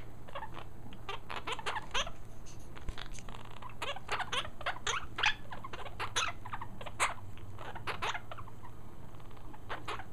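Two Quaker parrots (monk parakeets) giving a steady run of short, sharp chirps and clicks, several a second and uneven in loudness: the chatter of upset birds.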